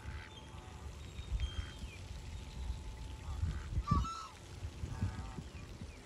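Scattered calls of waterfowl on a pond, the clearest a short honk about four seconds in, over a low rumble.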